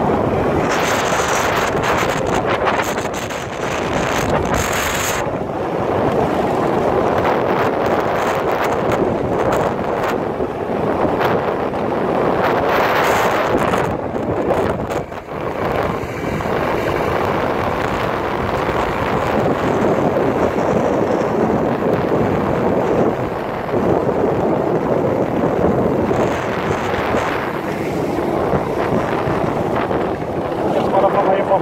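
Wind rushing over the microphone of a phone on a moving motor scooter, mixed with the scooter's running and road noise. It is loud and steady, dipping briefly about halfway through.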